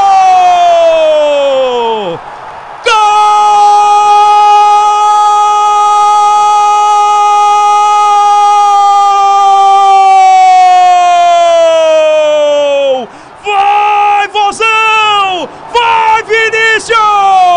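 Football commentator's drawn-out goal cry in Portuguese. One shouted note trails off and falls about two seconds in. A new one is held steady for about ten seconds before its pitch drops, followed by a few short shouts, each falling in pitch.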